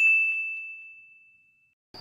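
A single bright ding sound effect: one bell-like chime struck once, ringing on one high tone and fading out over about a second and a half.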